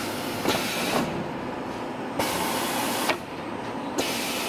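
Roll-winding machine running on black plastic mesh: a steady mechanical noise with several sharp knocks and a hiss that stops about three seconds in.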